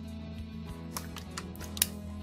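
Soft background music with a few sharp plastic clicks about a second in and near the end, the last one the loudest: a wireless access point and its Ethernet cable being handled.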